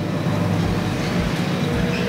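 A passing road vehicle: steady engine and tyre noise, fairly loud, with a low hum.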